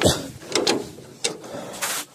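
Metal clicks and clunks from an old tractor's brake pedals as the brake locks are released: a thud, then about four sharp clicks.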